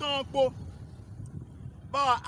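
A man's voice, loud and drawn out, for the first half second. Then comes a pause filled only by a low background rumble, and his voice returns at the very end.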